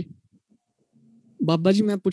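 Speech only. A voice ends a word right at the start, there is a short pause, and then a drawn-out spoken greeting begins about one and a half seconds in.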